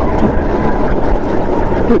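Go-kart running at speed through a corner, a loud steady engine and chassis drone heard from a camera mounted on the kart. A man's voice says one word at the very end.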